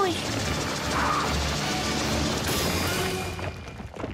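Cartoon action soundtrack: dramatic music mixed with sound effects, with a crash-like impact about a second in. The sound fades away near the end.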